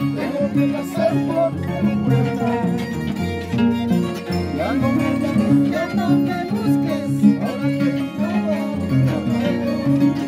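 Live Andean harp and violin playing a dance tune, the harp's low strings plucking a steady, repeating bass line under the melody.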